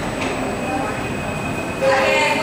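Steady classroom background noise with faint voices in it.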